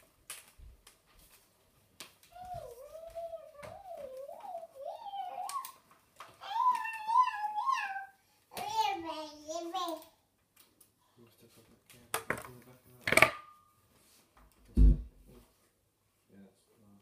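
A young child's voice making long, wavering sing-song calls that slide up and down in pitch, followed by a sharp knock and then a dull thump near the end.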